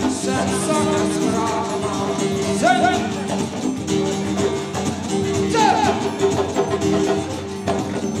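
A live band playing: a sung melody with a couple of sliding notes over guitar, steady bass notes and hand percussion with a rattling shaker.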